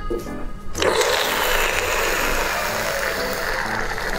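Close-miked biting and sucking on a braised pork large intestine: a dense, wet eating noise that sets in about a second in and keeps on, over background music.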